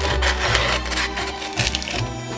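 Scissors cutting through baking parchment in a quick run of papery snips, over background music.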